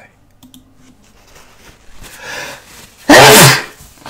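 A man sneezes once, very loudly, after a drawn-in breath; the sneeze comes from allergies.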